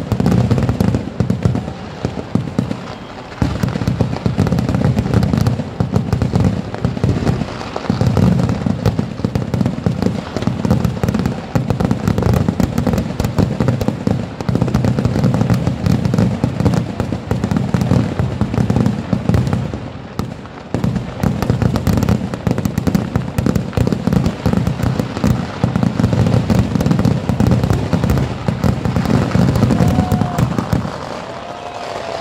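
Fireworks barrage: aerial shells launching and bursting in a dense, continuous run of bangs and crackling, with brief lulls about three, eight and twenty seconds in.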